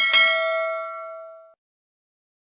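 Notification-bell sound effect: a single bright ding that rings out and fades, stopping about a second and a half in.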